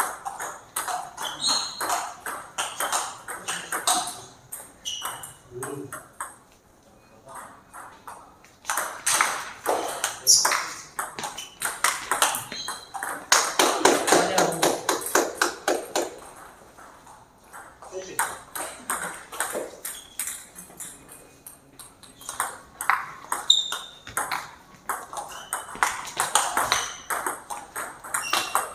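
Table tennis ball clicking off rackets and the table in rallies, the clicks coming in runs with short pauses between points.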